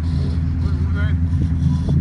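Steady low hum and rumble of a boat's motor running under way, with no change in pitch.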